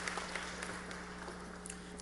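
Audience applause, thinning out and fading away.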